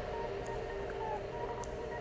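Experimental electronic music: a bed of steady held tones with two brief high ticks about a second apart and a short falling blip near the middle.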